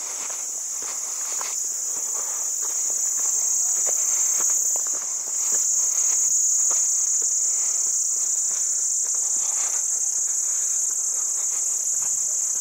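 A steady, high-pitched chorus of insects such as crickets or cicadas, swelling a little toward the middle, with irregular footsteps on a dirt and stone trail beneath it.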